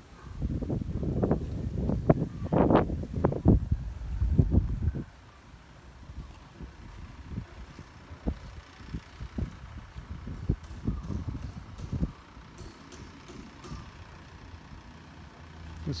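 Loud low rumbling noise on a handheld microphone for about the first five seconds, then quieter footsteps on a concrete street, about one step a second.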